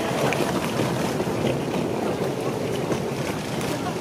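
Steady rushing noise of wind buffeting the microphone, with indistinct voices underneath.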